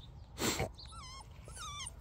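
A puppy whimpering in thin, high, wavering whines, twice, after a short soft puff of noise about half a second in. It is unsettled at being on a leash for the first time.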